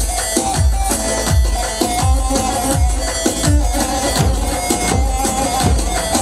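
Kurdish folk dance music: a davul bass drum beating a steady rhythm, about two and a half strokes a second, under a held, wavering melody.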